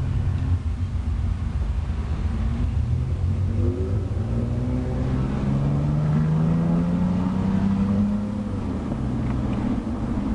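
Toyota 4Runner's engine and exhaust through a newly fitted MagnaFlow muffler, heard with the windows down while driving: a loud, low, throaty note. The pitch climbs as the engine pulls from a little past a third of the way in, then drops back near the end.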